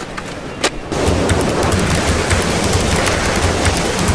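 Wind rushing over the camera microphone in skydiving freefall: a loud, steady rush with low buffeting that starts about a second in, after a quieter stretch with two sharp clicks.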